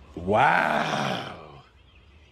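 A single drawn-out vocal groan, a little over a second long, rising briefly in pitch and then sliding down as it fades.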